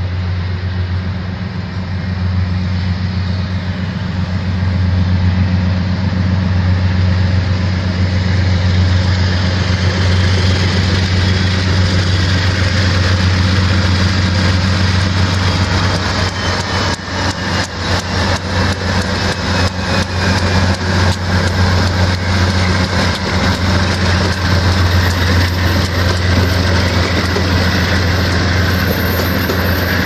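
Amtrak GE P42DC Genesis diesel locomotives rolling slowly past, their engines a steady deep drone that grows louder over the first few seconds. From about halfway, as the passenger cars follow, wheels click over the rails in a quick run of clacks.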